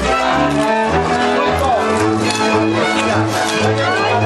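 Transylvanian Hungarian folk string band playing a dance tune: a fiddle melody over a bowed bass keeping a steady beat.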